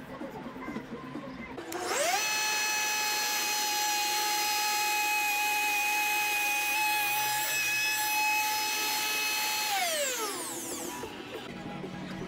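Compact wood router starting up with a quickly rising whine, then running at a steady high whine while cutting a channel in round wooden posts. It switches off near the end and winds down, its pitch falling over about a second.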